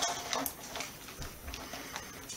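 A few light clicks from a small metal chain and clasp being fastened by hand.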